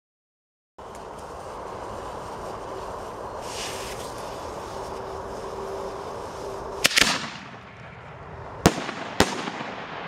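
A 2-inch Italian-style multi-break canister shell going off: a brief hiss, a sharp bang about seven seconds in, then two more bangs about half a second apart near the end, over a steady background noise. The shell partly fails, one of its breaks not firing.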